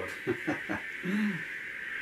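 A man's voice between words: a few short breathy, laugh-like sounds, then a brief rising-and-falling hum.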